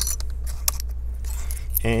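A few light metallic clicks and rustles from handling the small metal cover of a laptop's secondary M.2 slot, over a steady low hum.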